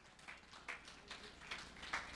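A quiet hall with a few faint, short taps spread through the pause.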